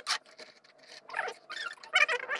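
Irregular metallic clatter and knocks of a wood-stove door and kindling being handled, with two short squeaks about a second in and near the end.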